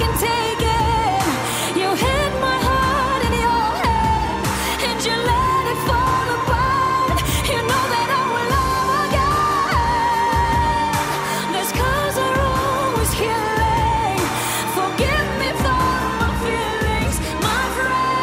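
A woman singing a pop ballad live, with long held, wavering notes over a band backing with a steady drum beat.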